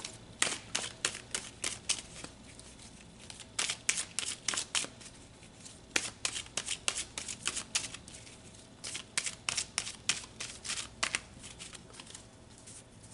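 A tarot deck shuffled by hand: runs of quick papery card flicks, four runs with short pauses between them.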